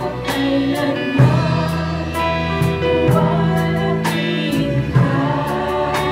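Live worship band playing a song: several women sing together over guitars and a drum kit, with drum and cymbal hits through it.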